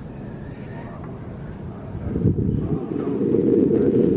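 Wind buffeting the camera's microphone: a rough low rumble that grows louder about two seconds in.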